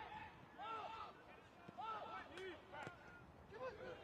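Faint, distant shouts and calls from footballers on the pitch: several short calls that rise and fall in pitch, one after another, with a couple of faint knocks between them.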